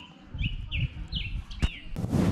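A songbird chirping, a run of short, falling high notes repeated about two to three times a second. Under it are low, uneven rumbles and a single sharp knock near the end.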